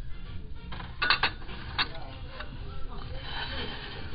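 Ceramic and glass dishware clinking as pieces on a store shelf are picked up and moved: a quick cluster of clinks about a second in and one more shortly after, over background music.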